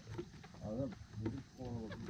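Background speech: short stretches of people's voices talking in the background, fainter than the foreground talk around it.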